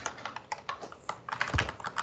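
Typing on a computer keyboard: a quick, irregular run of key clicks, with one heavier keystroke about one and a half seconds in.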